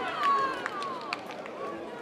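A player or spectator shouting across a football pitch: one long call that falls in pitch over about the first second, over faint background chatter.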